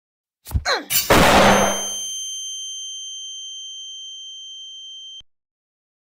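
Cartoon sound effect: a few quick falling swooshes, then a loud metallic clang about a second in that rings on in a high steady tone, fading slowly, and cuts off suddenly near the end.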